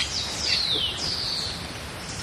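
Birds calling: high, thin whistles that slide down in pitch, two of them in the first second and a half, over a faint outdoor background.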